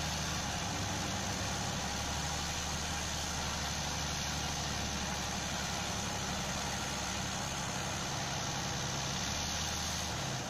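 Heavy tracked vehicles' diesel engines, a Vityaz DT-30 articulated carrier among them, running steadily with a low, even drone.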